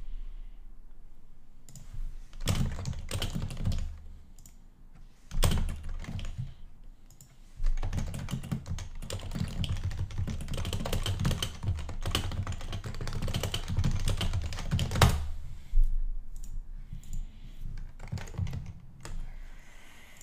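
Typing on a computer keyboard in bursts of rapid keystrokes: short runs early on, then a long continuous run through the middle, and lighter typing near the end.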